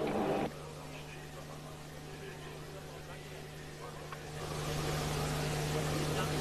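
Low steady hum with faint background noise on an old broadcast soundtrack; about four seconds in a broad hiss swells up and the noise grows louder.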